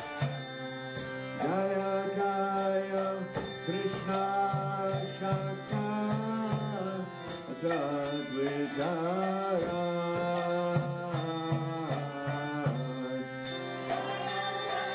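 Devotional kirtan chanting: a voice singing a bending melodic line over a sustained drone, with small hand cymbals (karatals) striking in a steady beat of about two to three strokes a second.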